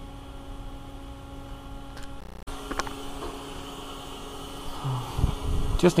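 Steady electrical hum of shop room tone, interrupted by an abrupt edit cut partway through, with a few low thumps near the end.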